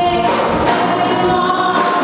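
Live rock band playing: electric guitars and a drum kit under a sung vocal line that holds long notes.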